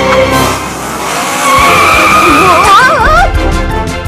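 Cartoon sound effects of a toy car: a rushing engine sound with a held squealing tone, like tires skidding, setting in about a second and a half in, then a warbling squeal near the end, over background music.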